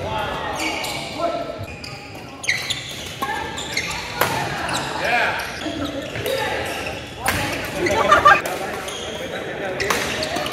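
Badminton doubles play in a large gym hall: a few sharp racket hits on the shuttlecock, with players' voices between them.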